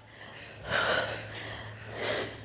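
A woman's heavy breathing from exertion during bicycle crunches: a hard, breathy exhale a little over half a second in and a shorter one near the end.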